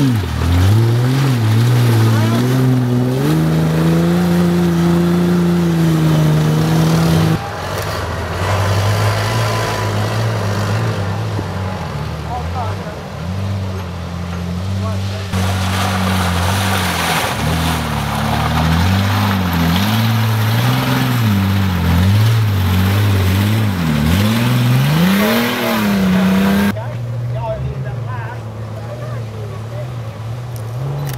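Off-road 4WD vehicle engines revving hard as they push through thick mud, the pitch climbing and dropping with the throttle. The sound changes abruptly three times as one vehicle gives way to the next.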